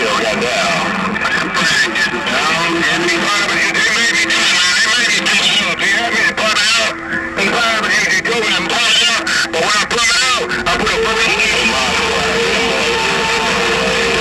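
Uniden HR2510 radio receiving on 27.085 MHz (CB channel 11): several stations talking over one another, garbled and unintelligible through static, with a steady whistling tone under them for much of the time.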